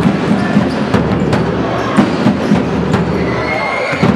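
A basketball bouncing on the court in irregular sharp thuds, over a steady murmur of spectators in the hall.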